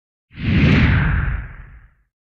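A whoosh sound effect marking an edit transition: it swells in sharply out of silence a moment in, then slides down in pitch and fades away near the end.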